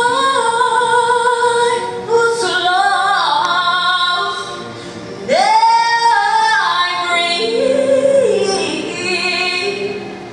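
A slow love ballad with a solo voice holding long, drawn-out notes over the backing music. About five seconds in, the voice swoops up to a high held note.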